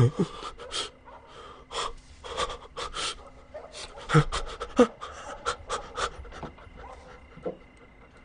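A man breathing heavily in a string of short, ragged pants and gasps, a few with a low grunt in them.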